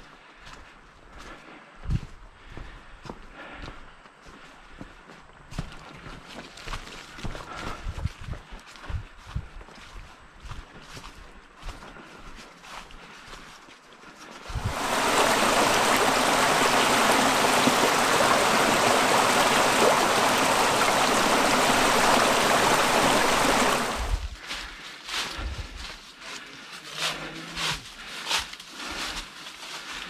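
Footsteps crunching on a rocky, leaf-covered trail. About halfway through, the steady rush of a small waterfall spilling into a creek starts abruptly and is the loudest sound. It runs for about ten seconds and cuts off, and the footsteps return.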